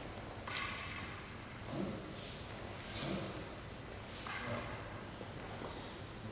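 Bare feet stepping and sliding on the mat and hakama swishing as two people move through a paired wooden-sword drill, heard as a string of short hissy bursts with a few soft thuds.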